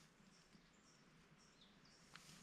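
Near silence with faint, short, high chirps of distant birds.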